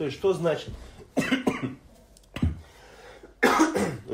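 A man's voice speaking briefly, then a pause broken by short noisy bursts, the last one near the end a cough.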